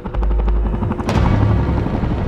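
Helicopter flying overhead: the rapid, even beating of its rotor blades over a deep rumble that swells just after the start, with the noise growing brighter about a second in.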